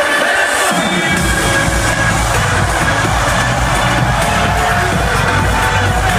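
Electronic dance music from a DJ set, played loud over a festival sound system. The deep bass line comes in about a second in and carries on under the track.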